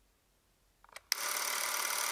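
Near silence for about a second, then a steady, fast mechanical whirring sound effect that starts abruptly.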